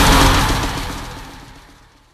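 The closing chord of a thrash metal song ringing out, then dying away steadily from about half a second in until it is nearly gone.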